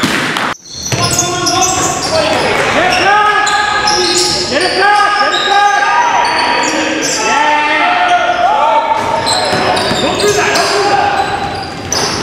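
Basketball game on a gym's hardwood court: many short sneaker squeaks, the ball bouncing and players' voices calling out, echoing in the hall. The sound drops out briefly about half a second in, then runs on steadily.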